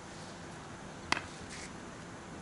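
A single sharp knock about a second in, over a faint steady background.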